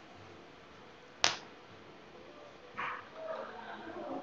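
A single sharp click about a second in, such as a key or mouse click, over quiet room tone, followed by a brief soft rustle and faint murmuring near the end.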